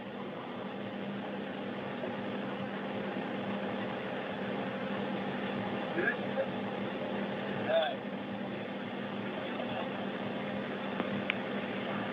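Steady hum and hiss of the space station module's cabin air-handling equipment, with a low drone under it. Faint distant voices break through about six and eight seconds in.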